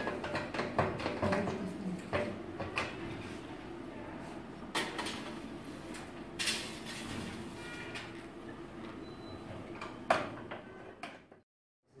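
The door of a MELAG Melatronic 23 benchtop autoclave is unlatched and swung open, and the metal ampoule tray slides out of the chamber. There are scattered clicks and metallic knocks over a steady low hum, at the end of a sterilization cycle. The sound cuts off suddenly near the end.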